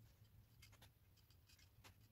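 Faint scattered clicks and scratches of thin picture-hanging wire being twisted by hand around itself, over a low steady hum.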